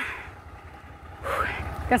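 Low, steady outdoor rumble along the roadside, with a brief faint voice sound about a second and a half in and a woman starting to speak at the very end.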